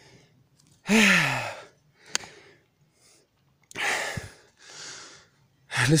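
A man breathing hard after a steep uphill climb. About a second in there is a loud, voiced sigh falling in pitch, followed later by further heavy breaths out and in as he catches his breath.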